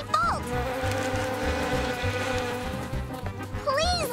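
Cartoon bee buzzing sound effect: a steady, even-pitched buzz that swells in and fades out over a few seconds, under background music with a low beat.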